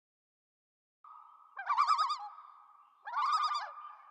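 A steady high whistle-like tone starts about a second in, with two loud warbling, bird-like calls over it. They come about a second and a half apart.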